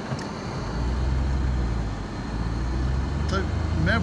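A motor vehicle's engine running with a steady low drone that strengthens about half a second in, as the vehicle drives on. A man's voice comes in near the end.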